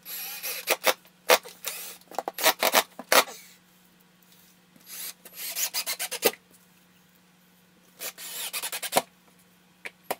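Cordless drill driving screws through drywall, in three bursts with sharp clicks: the first about three seconds long, a shorter one around five seconds in, and a last one around eight seconds in.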